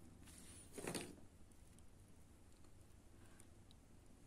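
Near silence: quiet room tone while crocheting by hand, with one brief soft sound about a second in.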